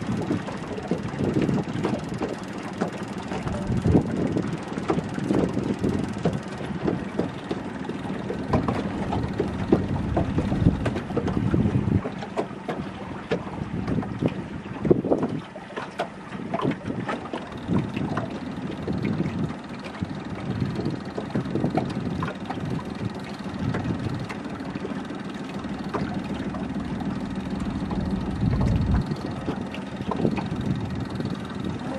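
Small boat's outboard motor idling as a faint steady hum, under irregular gusts of wind buffeting the microphone.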